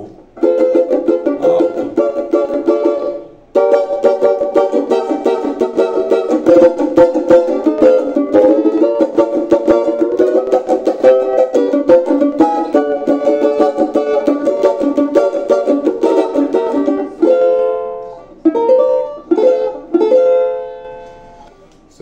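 Oliver banjo with a 10-inch pot strummed in quick, rhythmic chords, with a short break about three seconds in. Near the end the playing thins to a few single chords left to ring.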